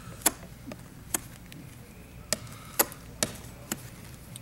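About six sharp, irregular clicks and taps from hands working glazing putty into a wooden window sash, pressed against the glass pane.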